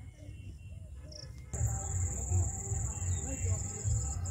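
Waterside ambience with faint chirps. About a second and a half in, a steady high-pitched insect trill starts suddenly, with low rumbling underneath.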